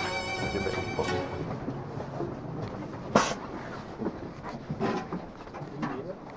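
Traditional Romanian fiddle music fading out in the first second or so, then the noise of people moving down a train carriage aisle, with a sharp knock about three seconds in and a few softer bumps after it.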